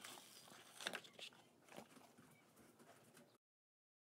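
Near silence, with a few faint small taps and clicks about a second in, like light handling at a table. A little over three seconds in, the sound cuts out to dead silence.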